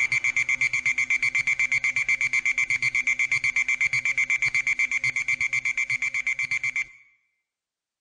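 Closing bars of a minimal techno track: a lone high-pitched electronic beep pulsing in a rapid, even rhythm, the beat and bass dropped out, stopping abruptly about seven seconds in.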